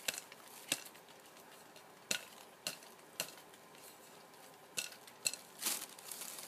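Irregular light knocks and clicks, about eight of them, from a terracotta clay pot being tapped and handled to loosen the orchid bark potting mix inside.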